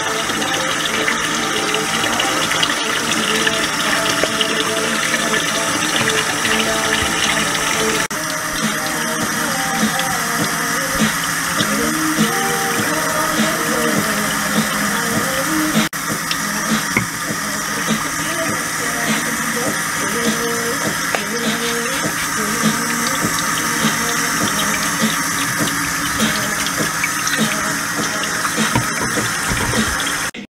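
Background music over water running steadily from a kitchen tap onto wet hair in a stainless-steel sink. The sound breaks off abruptly twice and starts straight up again.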